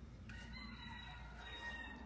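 A rooster crowing faintly: one long drawn-out crow that is cut off just as it ends.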